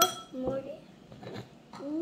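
A metal spoon clinks against a ceramic bowl, once right at the start and again near the end, each strike ringing briefly. A young child's voice makes short sounds between the clinks and a longer hum near the end.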